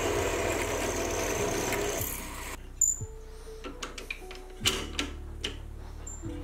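Lathe spindle running while a twist drill bores into the metal workpiece, a dense steady whir that cuts off abruptly about two and a half seconds in. After that come a few faint clicks and knocks as a tap is worked into the drilled hole by hand.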